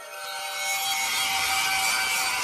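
A hissing, scraping sound effect with a few faint steady tones running under it, growing louder over the first second and a half: the sound design of an animated title intro.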